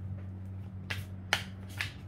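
Tarot deck being shuffled by hand: three sharp card slaps about half a second apart, over a steady low hum.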